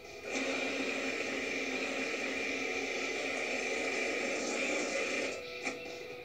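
Food processor running steadily for about five seconds, grinding raw chicken thighs with the other nugget ingredients, then switched off; heard through a TV speaker.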